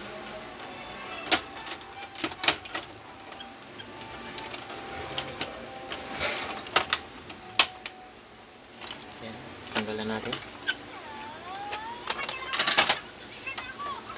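Irregular sharp clicks and knocks of hard plastic parts being handled on an opened Canon Pixma MP287 printer's casing, with a louder cluster of clicks near the end.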